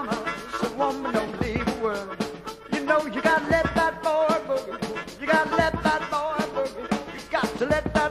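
Blues-rock band playing an instrumental stretch of a song: a steady drum beat with cymbals under wavering, bending lead lines.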